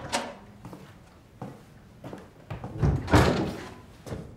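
Wooden office door opening with a click, then shut with a heavy thud about three seconds in, the loudest sound.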